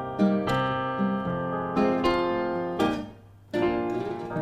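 Piano and acoustic guitar playing an instrumental passage together, notes struck every half second or so. The music stops for about half a second near the end, then starts again.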